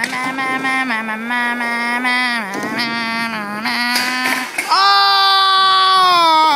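A person's voice holding long wordless notes with small slides between them, then jumping to a higher, louder held note about five seconds in.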